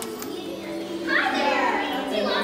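Background music with steady held notes. About a second in, a child's high-pitched voice comes in over it, without clear words.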